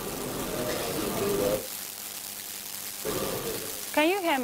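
Indistinct voices and room noise in a large hall. About halfway through it drops to a steady low hum, and the voices return near the end.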